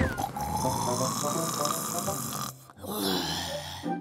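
A cartoon cat snoring: two long, drawn-out snores, the second starting about three seconds in.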